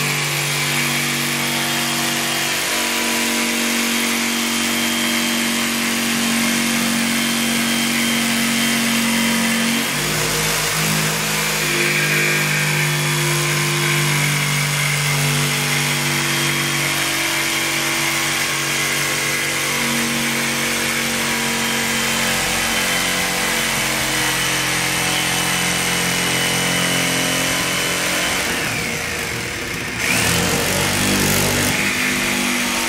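DeWalt corded jigsaw cutting through an MDF panel along a marked line. The motor runs continuously, its pitch shifting a couple of times, notably about ten seconds in, and dipping briefly near the end.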